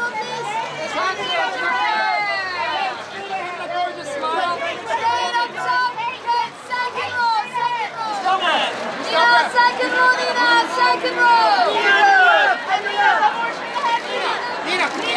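Many voices talking and calling out over one another: red-carpet press photographers shouting for the posing guest's attention, getting louder in the second half.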